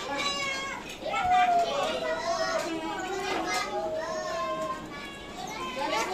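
Children's voices chattering and calling out in high voices.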